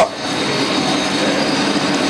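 Steady background noise with a low, even hum.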